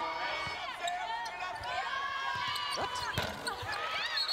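Basketball game play on a hardwood court: a ball bouncing and sneakers squeaking in short sliding chirps, with a sharp thump about three seconds in.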